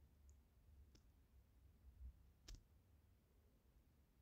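Near silence with a low hum, broken by two faint, short clicks about a second in and again about two and a half seconds in.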